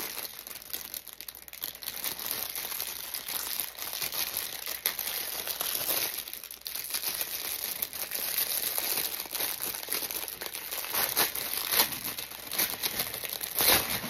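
Packaging crinkling and rustling as a newly arrived purse is unwrapped by hand, a steady run of small crackles with a few sharper, louder ones near the end.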